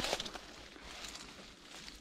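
Faint rustling of leafy shrub branches being brushed, with a brief louder rustle right at the start.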